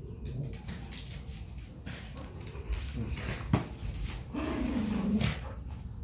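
Two dogs play-fighting over a plush toy, with scuffling and clicks on a tile floor. A sharp knock comes about three and a half seconds in, then a dog's playful growl lasts about a second, dropping slightly in pitch.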